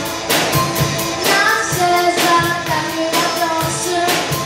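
A young live rock band playing: a girl singing held melodic lines over electric guitar, bass guitar, keyboard and a drum kit keeping a steady beat.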